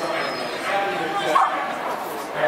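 A dog yipping, with the loudest yip about one and a half seconds in.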